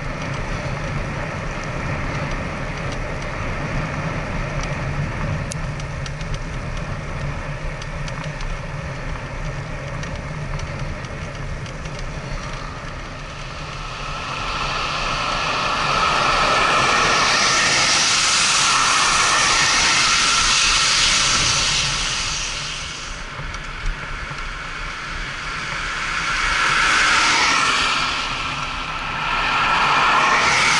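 Wind and road noise while riding a recumbent trike on a highway, then motor vehicles passing close by: a loud tyre hiss swells about halfway through, holds for several seconds and fades, with another vehicle passing near the end.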